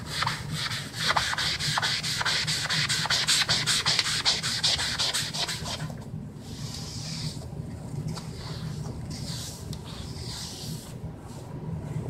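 Wet Magic Eraser (melamine foam) scrubbed back and forth on a wooden tabletop to lift an oily stain: quick, even strokes for about six seconds, then slower, wider wipes.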